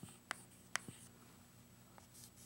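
Chalk writing on a chalkboard: three short, sharp chalk strokes in the first second, then faint quiet.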